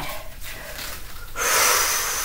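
A woman's heavy, breathy exhalation lasting just over a second, beginning about one and a half seconds in: an effort breath during a bodyweight kick-through exercise.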